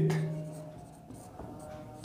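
Marker pen writing on a whiteboard: faint strokes of the felt tip on the board after a spoken word dies away at the start.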